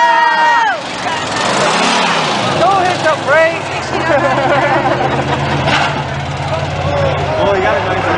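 Racing pickup truck engines running on the track, settling into a steady low tone from about four seconds in, under spectators' shouts and voices.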